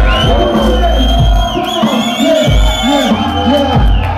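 Live hip hop played loud over a PA: a heavy bass beat under a long high whistling tone that wavers in the middle and stops near the end, with voices shouting over it.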